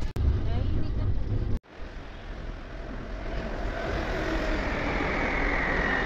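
Muffled rumbling from a covered, handled camera for about a second and a half, cut off abruptly. Then a metro train's steady rushing hum builds gradually, with a faint whine over it.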